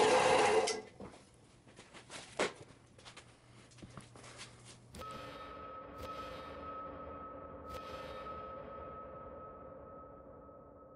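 A brief loud rush of rubbing and handling noise at the bandsaw's open belt and pulley cover, followed by a few scattered clicks. About halfway through this gives way suddenly to a title-card sound effect: a steady electronic drone with two held tones and a few swooshes, slowly fading.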